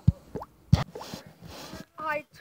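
Two short, soft thumps about two-thirds of a second apart, with a few fainter ticks and low noise between them.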